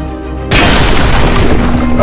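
Edited power-up sound effect over background music: a sudden loud boom about half a second in, followed by a sustained noisy blast that carries on.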